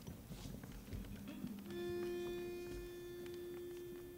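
Pitch pipe sounding a single steady note, held for about three seconds from a little under two seconds in, giving an a cappella group its starting pitch. Faint shuffling and small clicks around it.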